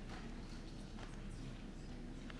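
Faint steady room hum with a couple of soft knocks, one near the start and one about a second in.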